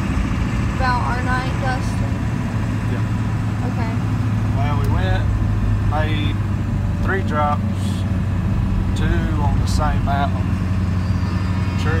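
Steady low drone of a vehicle on the move, heard from inside the cabin, with voices talking over it.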